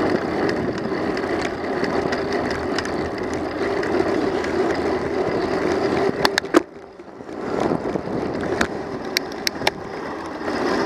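Riding noise from a moving bicycle picked up by a bike-mounted camera: a steady rushing rumble of tyres on pavement and wind. It dips for about a second just past halfway. There are a few sharp clicks or rattles just before the dip and again near the end.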